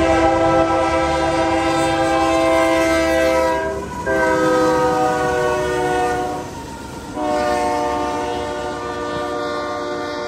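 Diesel locomotive air horn sounding a chord in long blasts for a grade crossing: a blast of about four seconds, a second slightly lower one that slides down in pitch as the locomotive passes, and a third starting about seven seconds in that fades out. A low rumble of the train runs underneath.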